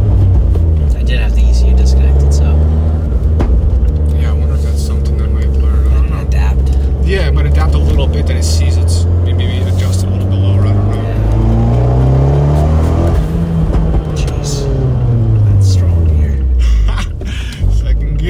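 Fiat 124 Spider Abarth's turbocharged 1.4 MultiAir four-cylinder under hard acceleration, heard from inside the cabin. The revs climb for a few seconds and then fall away about 13 to 14 seconds in.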